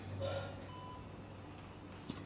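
Soft electronic beeps of an operating-room patient monitor, a short single-pitched tone every second or two, over a low steady hum.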